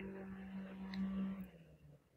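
Faint steady electrical hum with a low pitch and overtones, which cuts out about one and a half seconds in, leaving near silence.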